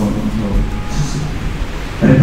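Indistinct speech, a voice that is not made out clearly, over a steady background hiss.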